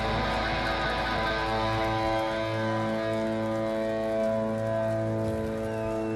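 Live rock band's electric guitars holding long sustained chords over the bass, which shifts to a new note about two seconds in, with no steady drum beat.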